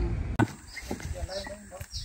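Faint voices talking, after a single sharp click near the start that cuts off a low rumble.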